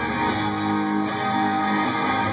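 Live country band playing, with strummed electric and acoustic guitars leading over the rest of the band.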